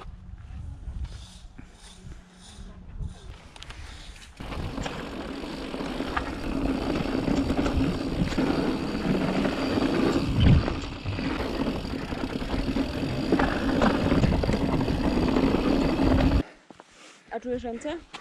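Mountain bike ride down a dirt forest trail heard from a handlebar-mounted camera: dense tyre, rattle and wind noise with a steady low hum underneath and one loud thump about midway. The noise starts abruptly after a few quieter seconds of low rumble and cuts off suddenly near the end.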